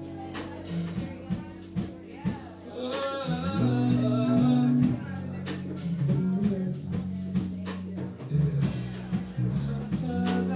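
Band music with guitar and drum kit, and a voice singing over it.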